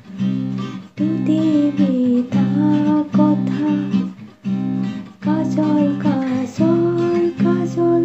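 Acoustic guitar strummed through a C minor chord progression, the chords changing with short breaks about every second, while a woman sings along.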